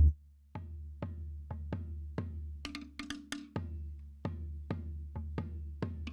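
Tahitian ʻōteʻa drumming: sharp wooden slit-drum strikes in a quick, uneven rhythm over deep drum beats, starting about half a second in.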